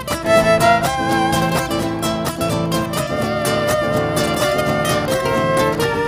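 A Bolivian huayño played by violins and an electro-acoustic nylon-string guitar, purely instrumental with no singing. The violins carry sustained melody lines over steadily plucked guitar.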